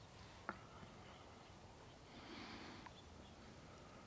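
Near silence, broken by one sharp click about half a second in and a faint rustle a little past the middle.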